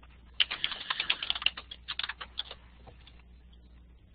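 Computer keyboard typing: a quick run of keystrokes for about two seconds, thinning out to a few last taps about three seconds in, picked up by a webinar microphone.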